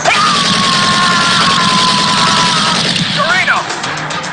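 Action-film soundtrack: a man's long drawn-out yell, falling slightly in pitch, over a loud dense din that stops about three seconds in, followed by a short shout.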